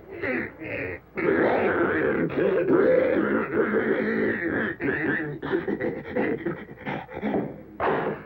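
Guttural growling and grunting of a monster's voice behind a closet door, loud and nearly continuous, with a short break about a second in.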